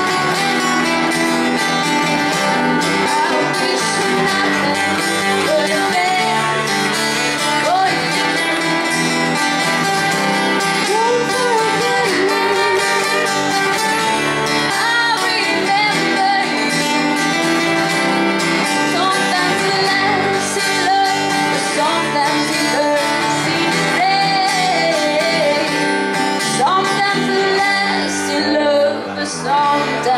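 Live acoustic band music: a strummed acoustic guitar and an electric bass accompany a woman singing with wavering, drawn-out notes.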